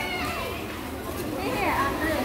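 Overlapping, fairly faint voices of people talking in a busy covered market, over a steady background hubbub.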